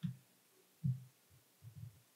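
Faint, dull low thumps, three or four about a second apart: handling noise at the lectern microphone, with quiet room tone between.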